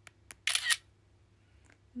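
Smartphone shutter sound as a screenshot is taken: two light clicks, then one short shutter sound about half a second in.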